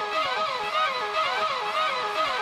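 Soundtrack music: a quick repeating figure of plucked, guitar-like notes, with no bass underneath.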